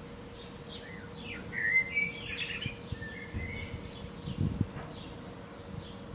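Birds chirping in the background, with a quick run of short gliding notes about one and a half seconds in and scattered chirps after. A faint steady tone runs underneath.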